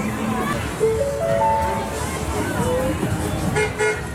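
Children's funfair carousel with toy cars: a short run of electronic beep notes stepping upward about a second in, and a brief horn toot near the end, over steady background music and the chatter of a crowd with children.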